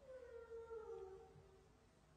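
A faint, distant child's voice: one drawn-out call that slides down in pitch and fades after about a second and a half, in the pause after a question put to the children.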